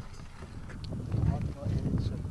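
Indistinct human voices, with no clear words, over a low rumbling noise and a few short clicks.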